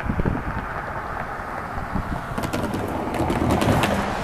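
Wind rumbling on the microphone, with a quick run of sharp clicks over the last second and a half.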